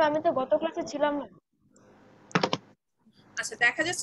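Speech over an online video call, broken about halfway through by a short cluster of clicks, then speech again near the end.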